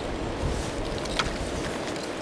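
Wind buffeting the camera's microphone over the rushing water of a river, a steady low rumbling noise with a couple of faint clicks.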